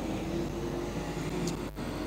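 Engines of modified sedan race cars running together on a dirt speedway oval: a steady drone with a held tone, dipping briefly near the end.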